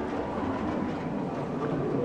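Steady background hubbub of an indoor public hall, with indistinct murmuring voices over constant room noise.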